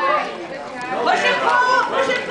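Children's voices chattering, high-pitched and overlapping, with no clear words.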